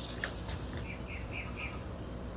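A small bird chirping in the background: four short, even chirps about a quarter of a second apart, over quiet room noise, with a light click at the start.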